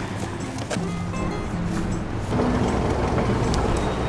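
Background music with held notes over a steady wash of noise, getting a little louder about two seconds in.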